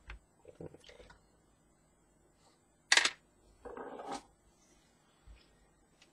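Quiet handling noises on a desk: a click at the start, a few soft knocks and rustles, one sharp short burst about three seconds in, and a brief rustle just after it.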